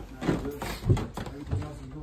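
Low voices of movers with a couple of dull knocks as heavy furniture is handled.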